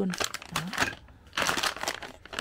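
Clear plastic bag crinkling as it is squeezed and turned in the hand, strongest in the second half.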